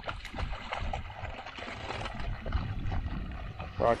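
A dog wading and splashing through shallow river water, an uneven run of small splashes.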